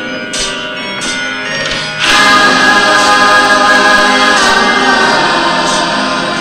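Many voices singing a song together, the audience joining in, with held notes that swell louder about two seconds in.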